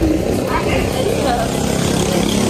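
A motor vehicle engine running steadily, with snatches of voices over it.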